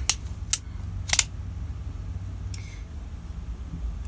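Ozark Trail folding knife's D2 steel blade being flicked open and shut on its ball-bearing pivot: three sharp clicks in the first second or so as the blade snaps into place, then a fainter short rasp about two and a half seconds in.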